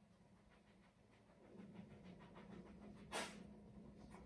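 Dog panting faintly in a quick, even rhythm, with one short sharp noise about three seconds in.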